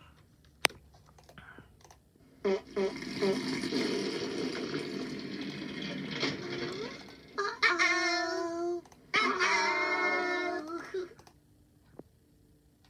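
Teletubbies episode audio played through a computer's speaker: a sharp click about half a second in, then a few seconds of noisy sound, then two stretches of high, held voices.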